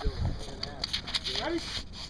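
People talking in short phrases, with scattered light clicks and rustling.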